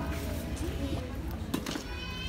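Outdoor flea-market ambience: faint background music and murmuring voices, with two sharp knocks about one and a half seconds in.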